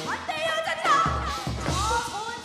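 Live Korean folk-pop band music: a woman singing into a microphone with sliding, bending pitches over the band, with low drum thumps.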